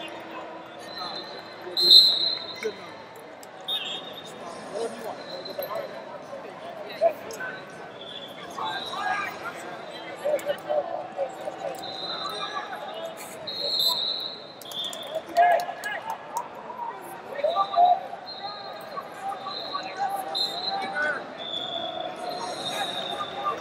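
Busy wrestling-arena ambience: a hubbub of distant voices and shouts, short high whistle blasts from referees on other mats several times, and occasional thumps on the mats.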